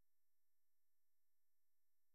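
Near silence: only the faint, steady tones of the recording's noise floor.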